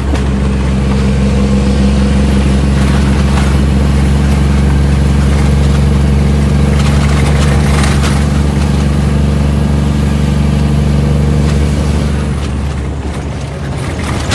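Shacman F3000 heavy truck's diesel engine heard from inside the cab, pulling steadily with a thin high whistle above it. The engine note eases off about twelve seconds in, as the throttle is let off.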